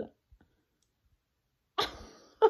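A woman's voice trailing off, then near silence with a faint mouth click. Near the end comes a sudden, loud sharp intake of breath.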